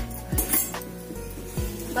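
Background music with a deep, regular beat, and a light clink of kitchen utensils about half a second in.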